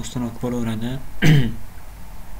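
A man's voice speaks for about a second, then he clears his throat once, loudly and briefly.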